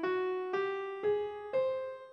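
The top of the Katyrimic scale (scale 469) played upward one note at a time in a piano tone, about two notes a second: F♯, G, A♭, then the upper C, which rings on and fades.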